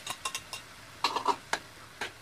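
A spatula knocking and clicking against a frying pan while tomato paste is stirred into sautéed onion paste: a few sharp clicks, then a denser cluster about a second in.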